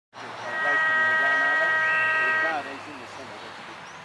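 A ground horn sounds one steady blast of about two seconds, the signal to start the quarter's play. Voices of the crowd carry under it.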